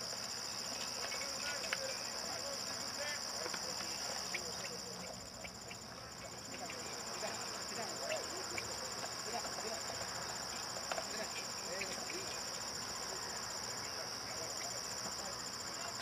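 Steady, high-pitched insect chorus, a continuous shrill trill that eases off briefly about five seconds in. Faint distant voices and small clicks sit underneath.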